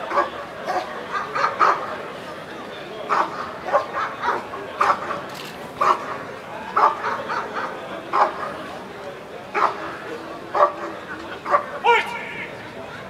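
German shepherd barking in short, irregular barks, sometimes two or three in quick succession and then a pause, while facing a protection helper at close range.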